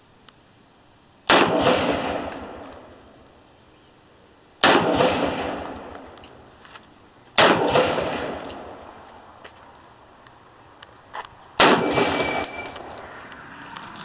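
Four rifle shots a few seconds apart, each followed by a long echo dying away. Short high pings come after each shot, most after the last.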